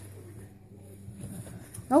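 Quiet room with a faint steady low hum; a woman's voice begins near the end.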